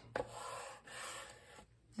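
Bone folder rubbed over a paper panel, burnishing it down onto cardstock: a faint, soft scraping rub in two strokes.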